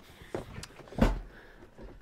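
Knocks and a heavy thud about a second in as a man climbs up into a heavy truck's cab.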